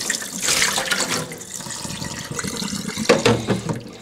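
Water running from a tap and splashing into a sink, a steady hiss that swells about three seconds in and eases off near the end.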